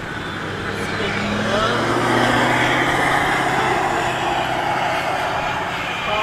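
A road vehicle driving past: engine hum and tyre noise swelling to their loudest about two to three seconds in, then easing off.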